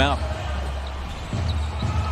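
A basketball being dribbled on a hardwood court, with a couple of dull bounces in the second half, over a steady low hum.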